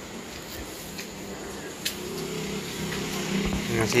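Low, steady engine hum that comes in about halfway through and grows slightly louder, with a single short click just before it.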